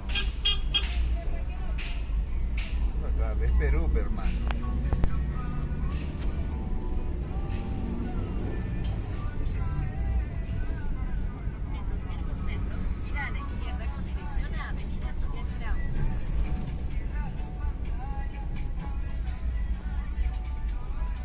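Steady low rumble of a car driving through city traffic, heard from inside the cabin, with music and voices playing over it.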